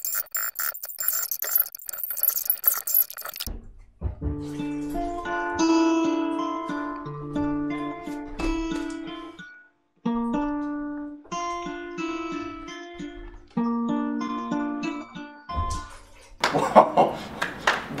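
Acoustic guitar played slowly one note at a time, a simple beginner's melody with a short break in the middle. It is preceded by a high hissing noise, and near the end a voice and clapping come in.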